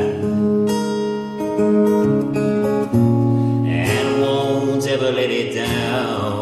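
Acoustic guitar strummed under a man singing a folk song, his voice holding long notes that change pitch every second or two.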